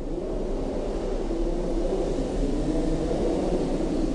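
A steady low rumbling noise with a faint drone in it, holding at an even level.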